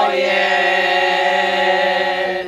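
Women's folk vocal group singing a cappella, holding one long, steady chord in several voices after a brief upward slide into it.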